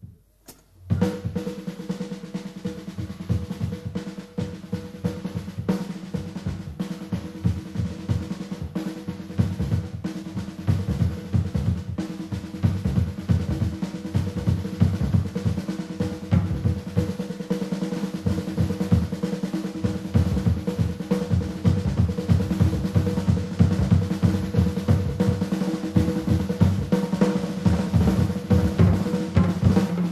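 Drum kit playing fast, busy rolls and fills on snare and bass drum, coming in after a brief gap about a second in, with steady low tones held underneath, in a live big-band jazz performance.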